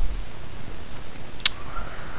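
Steady hiss of the narration microphone in a pause between sentences, with a single sharp click about one and a half seconds in.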